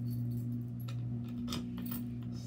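Light metallic clicks and a key jingling as a Fire-Lite BG-8 pull station is handled during its reset, a few clicks coming close together near the end. A steady low hum runs underneath.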